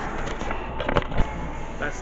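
A few sharp knocks and rubs from a handheld camera being swung around and bumped, bunched about a second in, the last one the loudest, over the chatter of a busy room.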